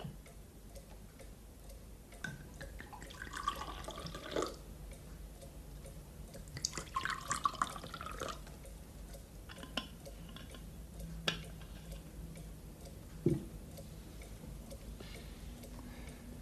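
Wine poured from a bottle into a glass in two short stretches, followed by a few sharp clicks of glass.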